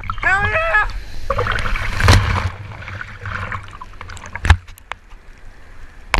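Short repeated whoops from a person at the start. Then water rushing and splashing around a camera at the waterline as a wave breaks past, loudest about two seconds in, with one sharp splash or knock about four and a half seconds in.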